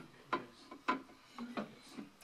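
A few short knocks and rubs of objects being handled and set down on a glass shelf inside a wooden display cabinet.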